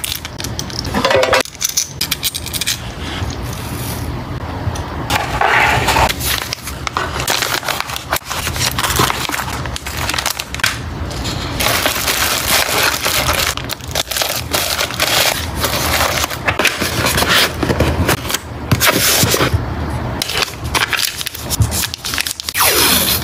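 Close-up crinkling and rustling of plastic packaging being handled, with many small clicks and crackles: acrylic keychain charms in a small plastic bag, then pink bubble wrap pressed into a cardboard mailer box.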